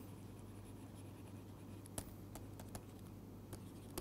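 Faint taps and scratches of a stylus writing on a tablet screen, a few scattered small clicks, over a steady low electrical hum.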